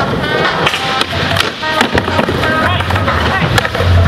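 Skateboard wheels rolling across a skatepark floor, with several sharp clacks of the board about a second to two seconds in, over music.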